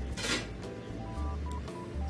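Cute background music: a melody of short beeping synth notes at changing pitches over a bass line, with a brief swishing noise about a quarter second in.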